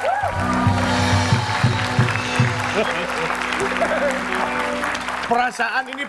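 Studio audience applauding and cheering with music playing under it; the clapping stops shortly before the end and a man's voice comes in.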